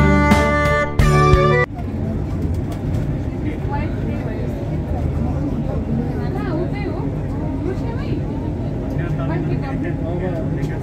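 Bowed-string music that cuts off suddenly about a second and a half in, followed by the steady low rumble of a moving vehicle with people's voices talking over it.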